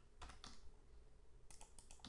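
Faint clicks of a computer keyboard being typed on. There are a couple of keystrokes near the start, then a quick run of about four about three quarters of the way through.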